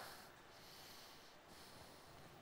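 Near silence: faint room tone in a pause between sentences.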